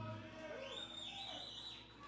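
Quiet lull on a live-music stage: a low steady hum from the band's amplified gear, with a faint high whistle-like tone for about a second in the middle.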